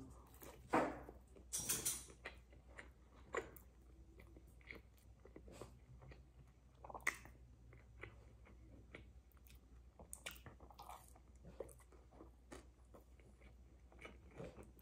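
A person biting into a chicken tender and chewing it: faint, irregular chewing and mouth sounds, a few louder than the rest.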